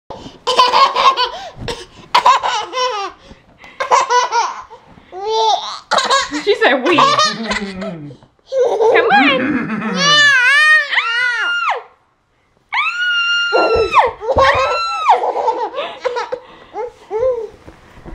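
A toddler laughing and squealing in repeated bursts of giggles, with an adult laughing along; a little past the middle comes a long, high, held squeal.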